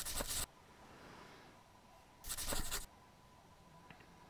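Two short rubbing scrapes of a hand against a hard surface, each about half a second, about two seconds apart, then a faint click near the end.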